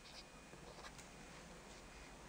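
Faint strokes of a marker writing on a whiteboard, a few short scratchy strokes mostly in the first second, over quiet room tone.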